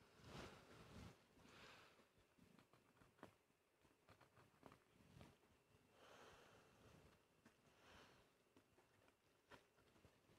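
Near silence. Faint small clicks and rubbing as a fingertip presses an old copper penny into its tight-fitting recess in a wooden guitar headstock, with a few soft hissing swells.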